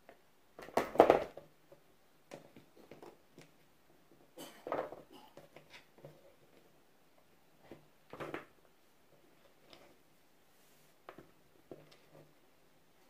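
Scattered soft knocks and short scrapes of cheese being cut into cubes and pushed about on a wooden cutting board, coming every few seconds.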